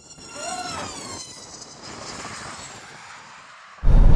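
High-pitched whine of a racing camera drone's electric motors, falling steadily in pitch over the first two seconds as it flies past, then fading into a steady rushing noise.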